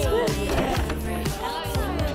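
Background pop music with a steady beat and bass.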